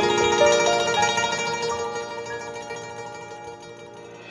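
Slow traditional Chinese music on a guzheng: a few plucked notes in the first second ring on and slowly fade away.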